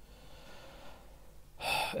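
A man's quick, audible in-breath near the end, over faint steady room hiss.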